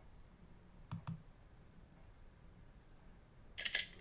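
Two quick computer-mouse clicks about a second in, over quiet room tone. Near the end comes a short run of faint, high-pitched clicks.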